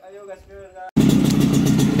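Vintage Vespa scooter engine running close up, coming in suddenly about a second in with a fast, even rumble.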